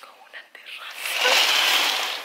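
A woman whispering breathily, with no voiced tone, from about half a second in.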